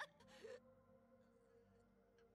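Near silence, with one brief faint sound about half a second in.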